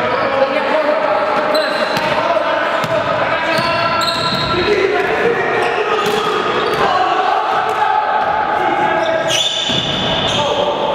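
A basketball bouncing and knocking on a hardwood gym floor, with players' indistinct voices echoing in the large hall.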